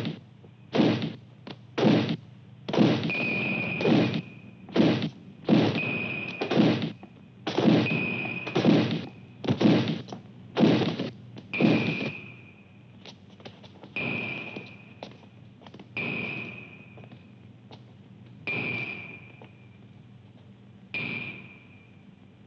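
A series of sharp strikes, about one a second at first, many followed by a brief high ring; in the second half they come farther apart and fainter.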